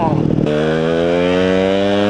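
A motorcycle engine pulling steadily, its pitch rising slowly as it accelerates, after a brief voice at the start.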